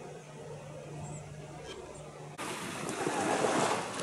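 A faint low steady hum, then an abrupt change about two and a half seconds in to the louder wash of small waves breaking on a sandy shore, with wind on the microphone.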